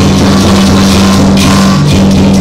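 Traditional Chinese lion-troupe percussion playing loudly: drum, gongs and clashing cymbals in a continuous beat.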